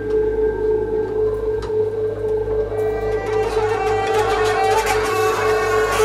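Improvised experimental music with two bowed double basses, saxophone and clarinet: a steady held tone over low drones, joined about three seconds in by a dense, bright high layer.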